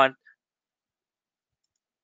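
A man's spoken word ends at the very start, followed by dead silence.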